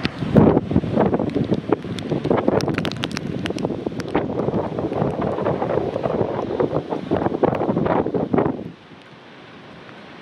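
Storm wind gusting hard onto the microphone, a dense rushing and crackling buffet that drops off sharply near the end.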